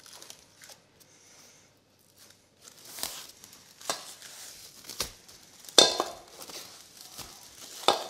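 Plastic cling film being pulled from its roll and stretched over a steel bowl of pasta dough, crinkling and crackling in a run of sharp bursts that start about three seconds in, with a tearing sound and a knock or two as the roll is handled.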